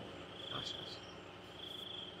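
A cricket chirping in short, high trills that repeat about every second and a half.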